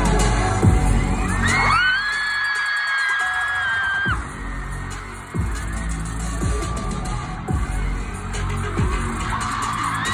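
Concert music over an arena PA with deep falling booms every second or two, and a fan's high-pitched scream close to the microphone that rises and is held for about three seconds; another scream begins near the end.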